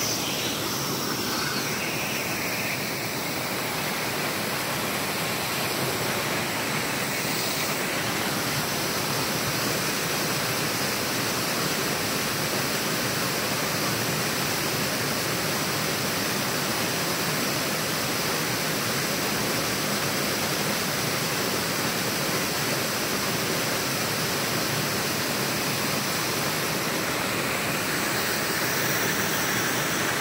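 Small waterfall pouring off a rock ledge into a pool below: a steady rush of falling water.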